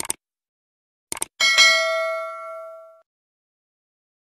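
Two quick pairs of clicks, then a single bell ding that rings out and fades over about a second and a half. This is the sound effect of a subscribe-button click and notification bell.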